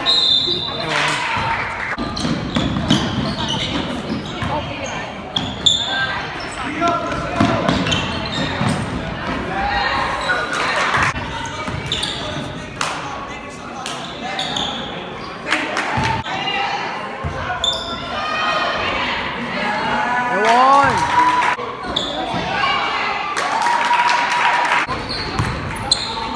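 Basketball dribbled and bouncing on a hardwood gym floor, with players and spectators calling out, all echoing in a large hall.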